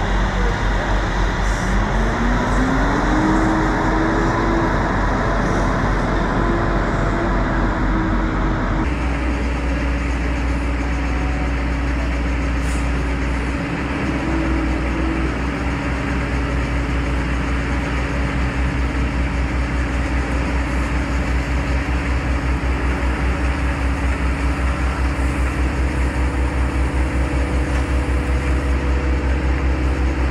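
Semi-truck diesel engine running steadily as the tractor-trailer manoeuvres and reverses, revving up about two seconds in. The sound changes abruptly about nine seconds in.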